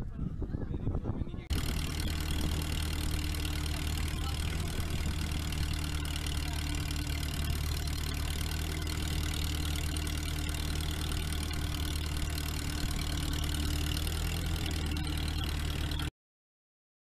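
An engine running steadily at a constant pitch with a hiss over it. It starts abruptly about a second and a half in, after a few uneven low thumps.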